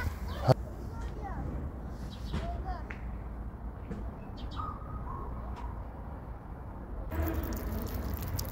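Quiet outdoor background with a steady low rumble and a few faint, short chirping calls. A rustling noise comes in near the end.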